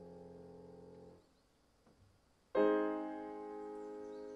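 Solo piano: a held chord fades away into a short pause, then a loud new chord is struck about two and a half seconds in and rings on.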